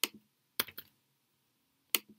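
A few sharp computer keystrokes and clicks: one at the start, two in quick succession just after half a second in, and one near the end.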